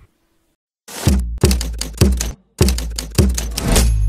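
Sound effect for a TV channel's logo ident: after a silent first second, a run of sharp hits, each with a deep boom, about twice a second, closing in a low rumble that is still sounding at the end.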